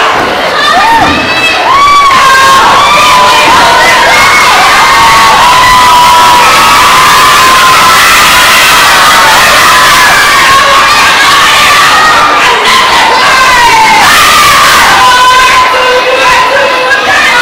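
A group of schoolgirls shouting a kapa haka chant in unison, loud throughout.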